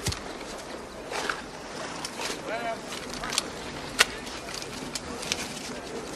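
Film soundtrack played over a hall's speakers: a soldier reloading a muzzle-loading musket, with a sharp click right at the start, another about four seconds in, and a few fainter clicks between. Faint voices murmur in the background.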